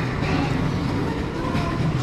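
Steady, loud rumbling din of a large, busy store hall, with faint voices mixed in.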